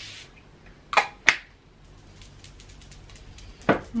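A pump-mist setting spray bottle handled at the face: a brief spray hiss at the start, then two sharp clicks about a second in, a third of a second apart, and another short click near the end.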